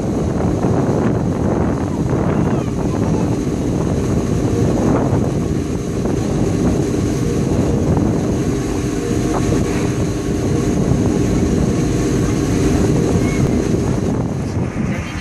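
Twin Caterpillar 16-cylinder turbocharged diesels of a Damen ASD 2411 harbour tug running under way, heard on board as a loud steady drone with a faint hum, with wind buffeting the microphone.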